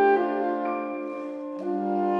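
Saxophone ensemble of soprano and alto saxophones playing held, overlapping notes in close harmony. The sound thins out in the middle, then a lower note enters about a second and a half in and it swells again.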